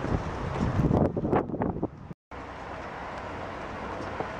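Outdoor wind buffeting the camera microphone as a steady low rush, with stronger gusts about a second in. The sound cuts off abruptly for a moment a little after two seconds, then the steadier wind noise resumes.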